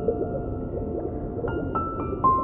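Soft, slow relaxation piano music. A pause between notes at first is filled with a faint wavering, gliding sound, and new piano notes come in about one and a half seconds in.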